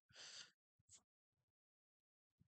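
Near silence, with a faint intake of breath in the first half second.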